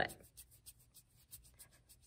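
Palms rubbing briskly together on damp wool yarn, making faint quick back-and-forth strokes about five a second. The friction felts two moistened yarn ends into one, as in a spit splice.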